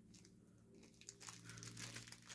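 Faint crinkling and rustling of a small plastic package of charms being handled, a little busier in the second half, over a low steady hum.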